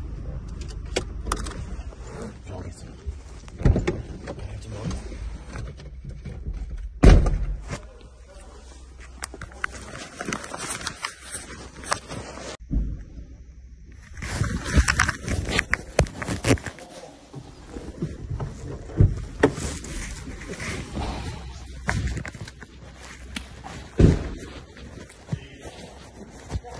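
Muffled handling noise from a lowered, covered camera: rubbing and scattered knocks, a heavy thump about seven seconds in, and indistinct voices. The sound breaks off suddenly about halfway and starts again.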